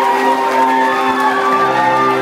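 Live pop band music in a concert hall: steady held chords, with scattered cheers and whoops from the crowd over them.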